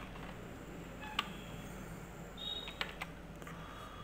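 A few faint, separate computer keyboard keystrokes over a low steady hiss, as a short word is typed.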